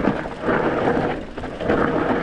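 Mountain bike descending a rough dirt trail: tyres rolling and crunching over earth and loose stone, the bike rattling. The noise comes in surges, swelling about half a second in and again near the end.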